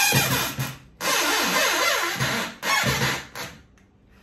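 Corded electric drill driving a 4 mm wood screw into MDF without a countersunk pilot hole, so the screw goes in under heavy load. It runs in three spurts with short stops about a second in and near two and a half seconds, its whine dipping and rising as it labours, then it stops near the end.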